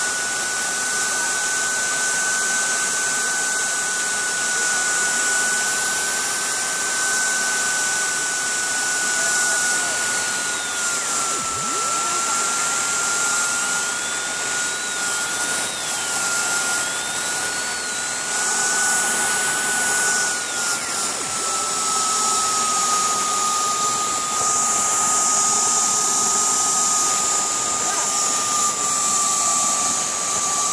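Model jet turbine engine running steadily at about 85,700 rpm on its first test run: a steady high whine over a rushing hiss. The whine drops slightly in pitch about two-thirds of the way through.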